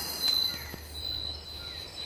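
Night-time tropical forest insect chorus: a steady, high-pitched trilling of crickets and other insects, with a few faint clicks.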